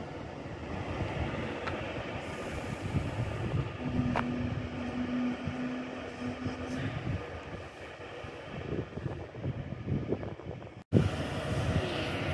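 Class 390 Pendolino electric train at the platform, giving off a steady hum and rush of running equipment. A single steady tone is held for about three seconds in the middle. The sound drops out for an instant near the end.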